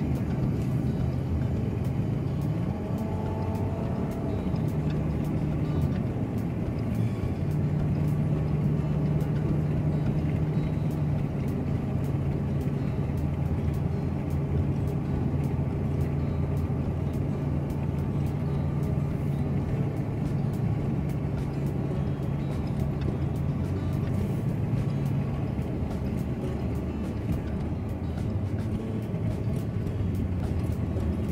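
Car on the move, heard from inside the cabin: a steady low drone of engine and tyre noise on the road.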